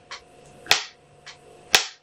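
Film clapperboard's hinged clapstick snapped shut twice, about a second apart: two sharp clacks.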